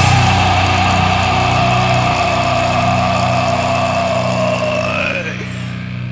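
Heavy metal band holding a sustained distorted chord that rings out, with a long held vocal scream over it that bends down in pitch about five seconds in as the sound fades.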